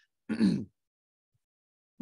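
A man clearing his throat once, a short rasp about a third of a second in.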